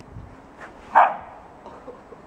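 A dog barks once, short and sharp, about a second in: a play bark during a rough tussle between two dogs.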